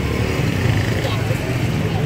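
Street traffic noise: a steady low engine sound from vehicles running nearby, with faint voices of passers-by mixed in.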